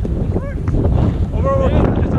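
Wind buffeting the microphone in a steady low rumble, with two short shouted calls over it, about half a second and a second and a half in.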